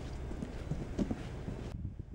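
Several footsteps of boots on a concrete stoop, over a steady low hiss of outdoor air that cuts off abruptly near the end.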